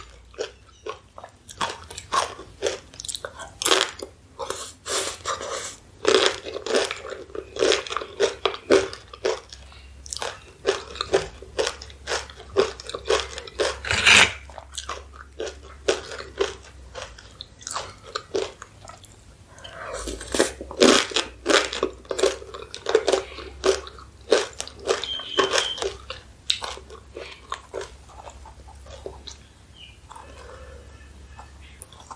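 Close-miked crunching and chewing of crisp tortilla corn chips dipped in cheese sauce: runs of sharp crackling crunches, with one loud crunch about halfway through.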